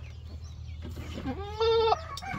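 A goat bleating once, a single short steady call about a second and a half in.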